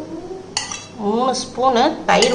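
A steel spoon knocking and scraping against steel vessels as thick milk cream is scooped into a pail, with one sharp clink about half a second in.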